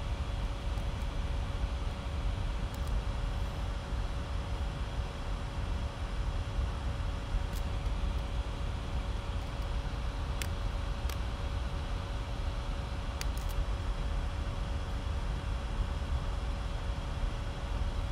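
Steady background room noise: a low rumble with a faint constant hum, broken by a few faint clicks in the middle.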